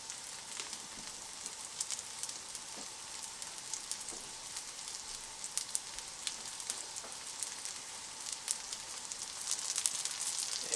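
Panko-breaded rockfish fillet shallow-frying in oil in a cast-iron skillet: a steady sizzle with many small scattered pops and crackles.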